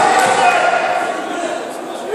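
Shouting from ringside, a man's voice calling out with the echo of a large sports hall, with two sharp knocks in the first half second.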